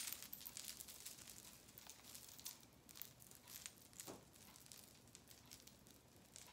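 Near silence, with faint scattered clicks of beaded costume jewelry being handled and untangled.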